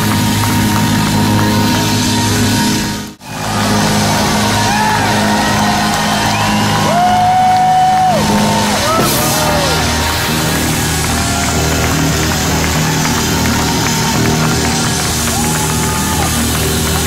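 Live blues band playing, with held, bending melody notes over a steady low accompaniment. The sound cuts out sharply and briefly about three seconds in.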